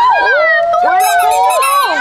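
Several voices drawing out a long, excited "woo!" together, their pitches gliding up and down and overlapping: people cheering over a prize won from a ten-baht claw machine.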